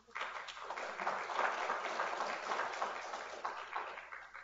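Audience applauding, starting right away and easing off toward the end.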